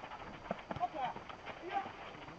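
Players and spectators calling out at a distance, in short broken shouts, with several sharp knocks scattered among them.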